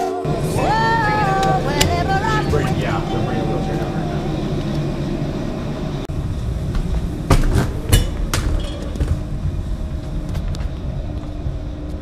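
A soul song with a singing voice over a band; the singing drops out about four seconds in and the band plays on, with two sharp knocks about halfway through.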